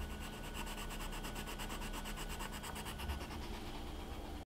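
Coloured pencil scratching on notebook paper in quick, evenly spaced strokes, several a second.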